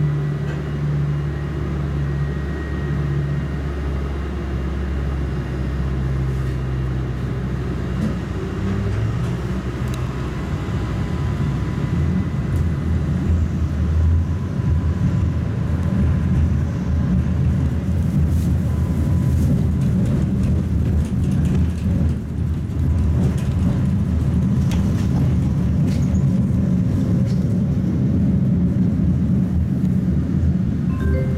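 Tatra T3 tram running, heard from inside the passenger cabin: a steady rumble of wheels on rails and running gear, with a low hum in the first few seconds and faint steady whines above it. The rumble grows louder and rougher about ten seconds in.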